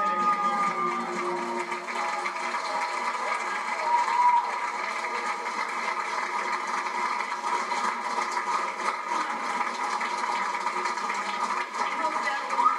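Audience applauding steadily as a stage show ends, with a few faint voices in the crowd.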